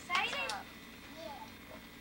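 A short, high-pitched vocal cry that bends in pitch, about a quarter of a second in, followed by faint voices in the room.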